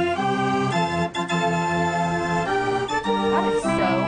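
A restored carousel band organ, over 80 years old with 203 pipes, playing a tune. Its pipes sound in held, steady chords that change every second or so.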